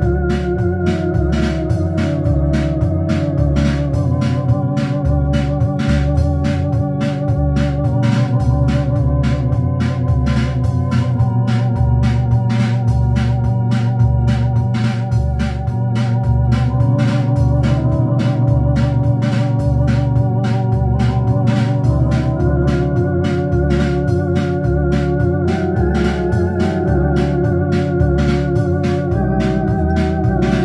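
Two-manual home electronic organ being played: sustained chords over a bass line that steps between notes about twice a second, with a steady, even beat running underneath.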